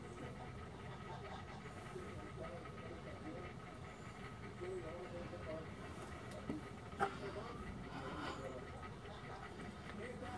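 Faint, indistinct voices under a steady thin hum, with a sharp click about seven seconds in.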